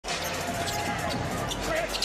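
Basketball being dribbled on a hardwood court, a run of short bounces over the steady noise of an arena crowd.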